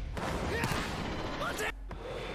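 Japanese anime voice acting from the episode: short spoken calls from the characters over a busy background of match noise and music. The sound drops out briefly near the end.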